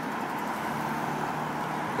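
A pickup truck driving past on a city street: steady tyre and engine noise.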